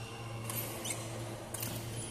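Badminton doubles rally: a few sharp racket strikes on the shuttlecock and a short squeak of court shoes on the floor, over a steady low hum in the hall.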